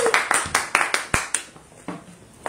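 One person's hand claps, about six a second, thinning out and fading away within about a second and a half, with one duller knock among them.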